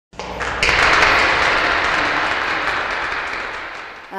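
Audience applauding in a hall, swelling within the first second and then slowly dying away.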